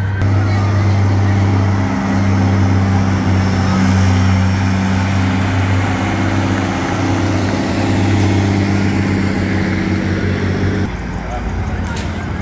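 Diesel engine of a military 6x6 cargo truck running at a steady low speed as it rolls past at close range, a steady low drone that cuts off sharply near the end.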